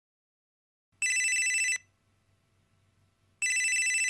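Cordless telephone ringing with an electronic warbling trill: two rings, each just under a second long, about two and a half seconds apart, signalling an incoming call.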